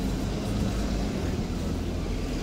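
Steady low rumble of street traffic: city buses running at a stop beside the pavement.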